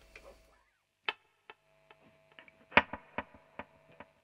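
Electric guitar through a slapback delay feeding a longer delay: quiet muted-string clicks echo as a run of evenly spaced, fading repeats, over a faint low note held for about two seconds.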